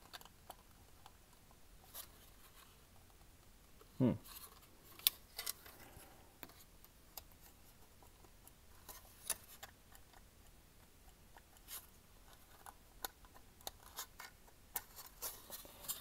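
Faint, scattered clicks and light taps of a 1:18 scale diecast model car's plastic chassis and parts knocking in the hands as the model is handled and turned over.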